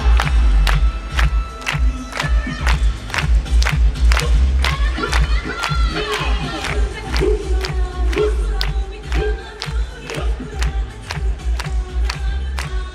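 Loud yosakoi dance music over a PA with heavy bass and a steady beat about twice a second. A troupe of dancers shouts calls in unison over it.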